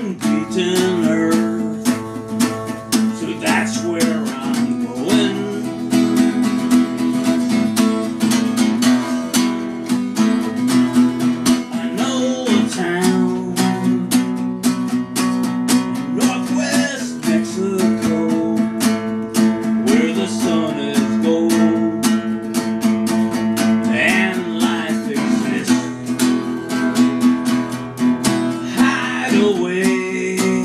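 Acoustic guitar strummed in a steady rhythm as song accompaniment, with a man's voice singing short phrases now and then over it.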